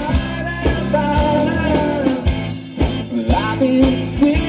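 Live rock band music: a singer's melody over bass, guitar and drums, with drum hits about twice a second.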